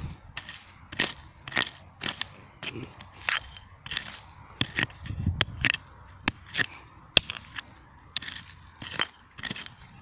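Small steel hand pick chopping and scraping into dry, grassy soil, digging out a metal detector target: short, sharp strikes at an irregular pace of about two a second, kept light so as not to damage a possible coin.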